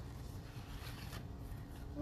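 Sheets of paper rustling as they are handled, loudest about a second in.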